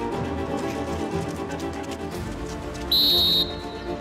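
Background music with sustained tones. About three seconds in, a short, loud blast on a coach's sports whistle sounds, signalling the runners.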